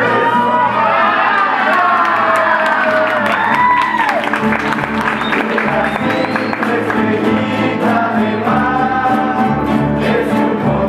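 A rondalla: a group of young voices singing together, accompanied by strummed nylon-string acoustic guitars and a double bass keeping a steady rhythm.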